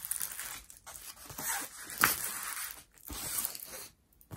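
Rustling and crinkling of a large diamond painting canvas and its plastic cover film being handled, with a sharper crackle about halfway through.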